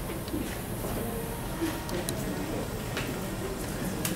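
Indistinct chatter of people in a room, with a few faint knocks.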